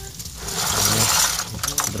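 A mesh net bag of pond filter media being grabbed and shifted inside a plastic filter bucket: a rattling, rustling burst of about a second, then a few short clicks near the end.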